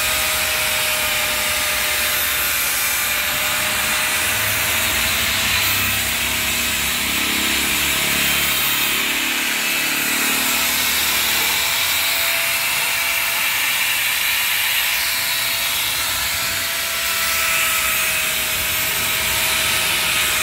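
Corded angle grinder running steadily with its disc worked against a wooden frame, a constant motor whine over the rasp of the wood.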